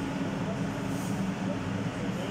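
A steady low mechanical hum, like a fan or motor running, at an even level throughout.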